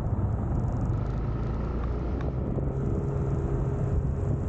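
Scooter engine running at low road speed, a steady low drone heard from the rider's seat along with tyre and road noise.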